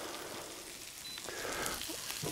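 Meatballs of mixed minced meat sizzling gently in vegetable oil in a frying pan over low heat, a soft, steady crackle.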